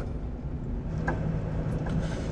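Low steady rumble of a car running, heard from inside the cabin, with a low hum joining about a second in.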